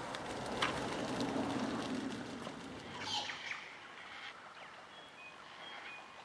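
Water and wing noise as a flock of shags lifts off over the bay. About three seconds in comes a single harsh, falling bird squawk, then a few faint short chirps.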